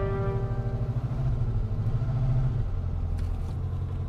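Car engine running with a low, pulsing rumble. A sustained music chord fades out in the first half second.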